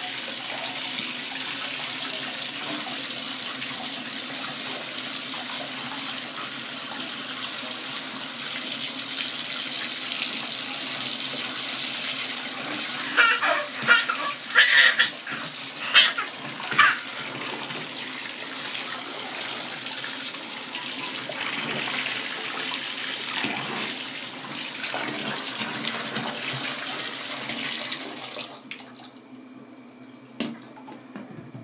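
Bathtub tap running into the bath water with a steady rush, falling away about two seconds before the end. Between about 13 and 17 seconds a run of short, loud, high sounds stands out over it.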